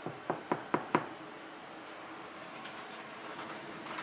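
Four quick knocks on a cabin door, about four a second, each louder than the last, over a steady low hum.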